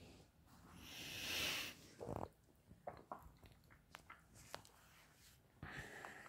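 Quiet room tone with rain pattering faintly against the windows, heard as a few scattered soft ticks, and a soft rushing swell about a second in.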